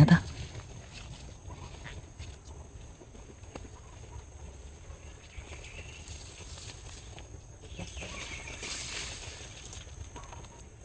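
Footsteps and leaves rustling as people push through dense leafy undergrowth, with a louder stretch of rustling near the end, over a faint steady high-pitched hum.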